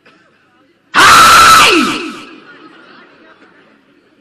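A man's sudden loud shout into the stage microphones about a second in, hitting full loudness and distorting, with its pitch falling as it dies away over about a second.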